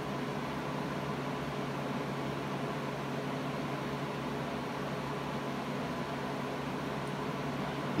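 Steady background room noise: an even hiss with a low mechanical hum, unchanging throughout.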